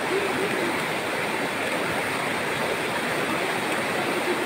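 Fast river water rushing and churning over rocks below a tree-trunk footbridge, a steady unbroken rush.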